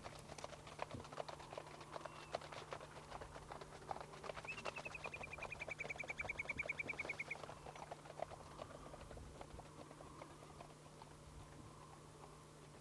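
Hoofbeats of two Icelandic horses running at pace on turf, a rapid patter that fades toward the end. A bird's rapid trill of about twenty notes sounds over it for about three seconds from about four and a half seconds in.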